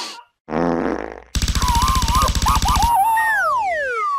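Cartoon sound effects: a short buzz, then a longer, louder buzz with a wobbling pitch, then a falling whistle near the end.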